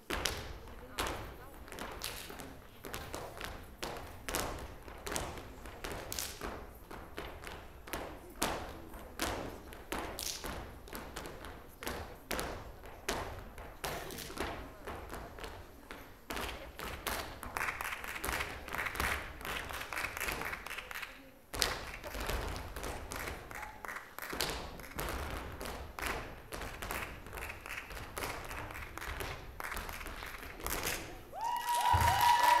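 Flamenco-style dance music driven by rapid, sharp percussive strikes, hand claps and stamps, over a steady low bass.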